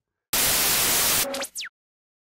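Static-noise transition sound effect: about a second of loud white-noise hiss, then a short glitchy tone and a quick falling sweep before it cuts off.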